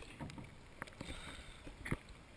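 Small waves lapping and splashing against a camera at the sea surface, with a few faint sharp clicks of water on the housing.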